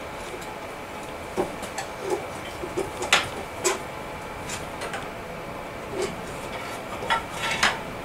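Scattered metallic clinks and clanks of a pry bar and the cast-iron crankcase halves of a Kohler KT17 twin as the case is split apart, with the sharpest knocks about three seconds in and again near the end.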